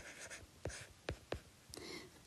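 Faint scratching and tapping of a stylus writing on a tablet screen: short scratchy strokes at the start and again near the end, with several light taps in between.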